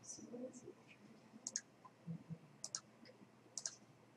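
Faint clicks of a computer mouse button: three quick pairs of sharp ticks, about a second apart.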